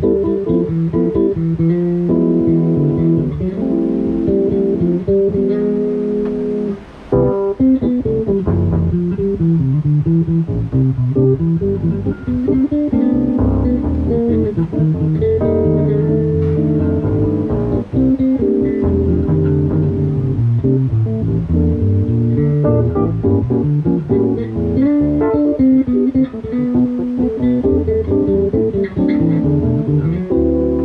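Live instrumental duo music: an electric bass guitar and a Yamaha CP stage piano playing together, with a brief break in the sound about seven seconds in.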